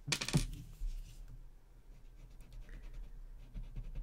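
A short, sharp clatter of a drawing tool set down on a hard tabletop at the start. Later, faint scratchy rubbing of a paper blending stump (tortillon) smudging graphite shading on a paper tile.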